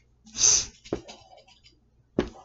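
A person's short, sharp breath, a breathy burst about half a second long, followed by a single click.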